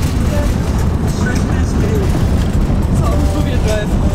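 Holden Commodore station wagon driving on a gravel road, heard from inside the cabin: a loud, steady low rumble of tyres on gravel and road noise.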